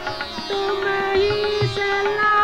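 Hindustani light-classical dadra in raag Khamaj: a long held melodic note enters about half a second in over plucked strings and low drum strokes.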